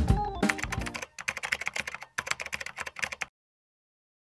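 Background music with guitar and drums dying away in the first second, overlapped and followed by fast computer-keyboard typing clicks for about two seconds that cut off suddenly a little after three seconds in.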